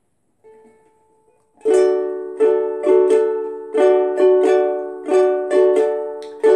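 A ukulele strums a D major chord in a swung down-down-up washboard pattern. The strumming starts about one and a half seconds in, after a faint single ringing note.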